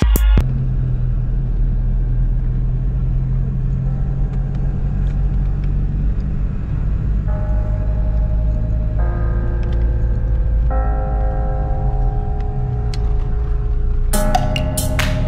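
A car being driven, its engine and road rumble heard from inside the cabin, steady and low. Soft sustained music chords come in about halfway and change every second or two.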